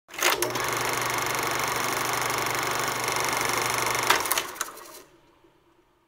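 Sound effect of a film projector running: a steady, rapidly fluttering mechanical whir over a low hum, with sharp clicks just after it starts and again about four seconds in, then winding down and fading out by about five seconds.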